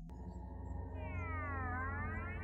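Background film music: a sustained low synth drone that starts with a sharp click, with a cluster of synth tones gliding downward and then back up in the second half.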